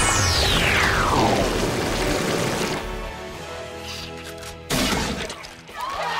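Cartoon sound effects: a whistle that sweeps steeply down in pitch over a loud crash, fading out by about three seconds in. Then held music notes, broken by a sudden short burst a little before the end.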